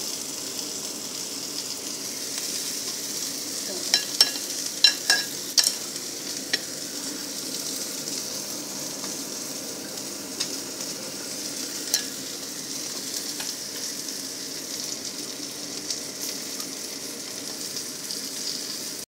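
Whole capelin shallow-frying in oil in a cast-iron pan, a steady sizzle throughout. A cluster of sharp clicks comes about four to six seconds in, with a couple more later.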